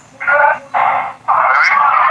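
Indistinct speech heard through a telephone line, thin and muffled with no low end, in two short stretches with a brief gap between.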